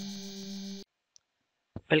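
The tail of an intro jingle: a held low synth tone with a fast ticking over it, cutting off suddenly a little under a second in. A narrator's voice starts near the end.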